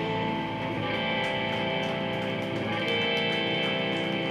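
A live rock band playing an instrumental passage led by strummed electric guitars, with bass and keyboard under it and no singing.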